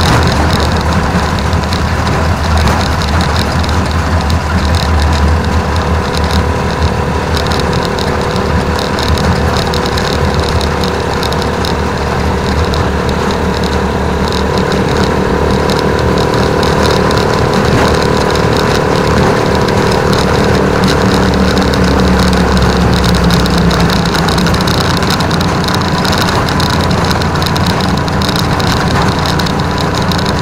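Rusi Chariot 175 motorcycle tricycle's engine running steadily under way, with road and wind noise around it. The engine's note shifts a little partway through, then settles.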